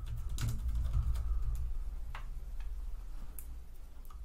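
Typing on a computer keyboard: a run of quick, irregular key clicks over a low steady hum.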